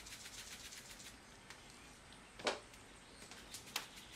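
Coarse crushed salt sprinkled from a shaker onto raw bone-in beef short ribs: a faint patter of many tiny grain ticks, with two louder ticks about two and a half seconds in and near the end.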